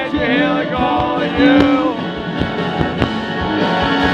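Live rock band playing through a PA, with steady drums, electric guitar and a male lead vocal singing over them.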